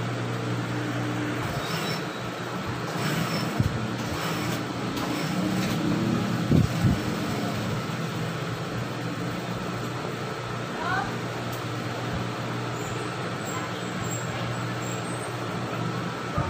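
A steady low hum of a running electric motor, with a few light knocks from handling about a third of the way in and near the middle.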